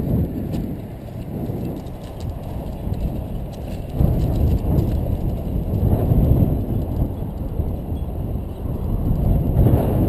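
Kite buggy rolling fast over bumpy grass: a rough, uneven rumble from the wheels and frame, with wind buffeting the microphone. It gets louder about four seconds in.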